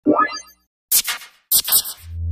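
Sound effects of an animated logo intro: a quick rising boing-like glide in the first half-second, then two short bursts of glitchy static about a second and a second and a half in.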